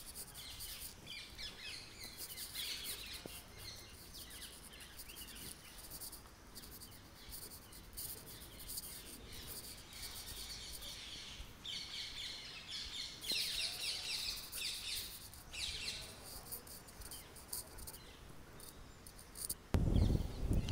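Insects and birds chirping, in high bursts that come and go, with a faint low rumble underneath.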